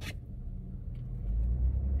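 Low motor-vehicle rumble heard from inside a car cabin, swelling about halfway through.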